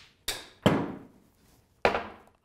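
Small hard balls hitting and bouncing on a hard floor: three sharp knocks with a short ring, the loudest a little over half a second in and the last near the end.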